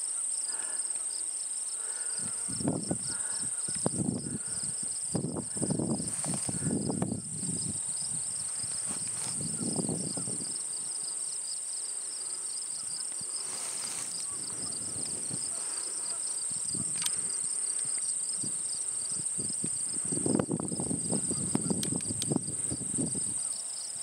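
Steady chorus of crickets and other insects in prairie grass: a continuous high buzz with a fast pulsing trill beneath it. Low gusts of wind buffet the microphone a couple of seconds in and again near the end.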